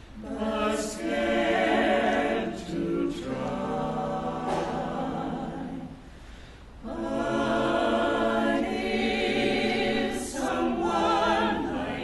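Small mixed vocal ensemble of men's and women's voices singing a Broadway ballad in harmony, in long sustained phrases with a brief breath-pause near the middle.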